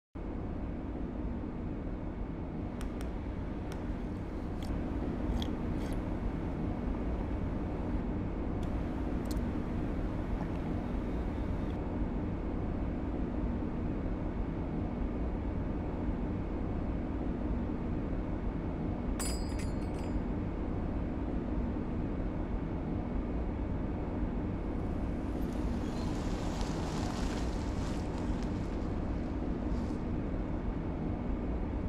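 Steady low ambient hum of a quiet room, with a few scattered light clicks and clinks. A hiss swells up near the end.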